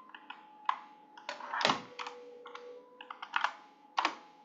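Computer keyboard being typed on: irregular clusters of key clicks, with a couple of louder strokes.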